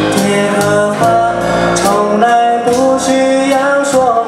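Live band music: a man singing a slow song to keyboard accompaniment, with long held notes.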